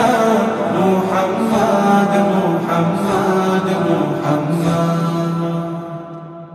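Male voices chanting the closing refrain of a Bangla Islamic gojol in long held notes, fading out over the last second or so.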